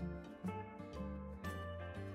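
Instrumental background music, with a new note or chord about every half second.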